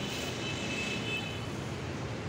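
Steady background noise, with a faint high whine that fades out about one and a half seconds in.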